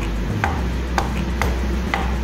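Knife chopping boiled cauliflower florets on a plastic cutting board: about six sharp, unevenly spaced knocks of the blade hitting the board.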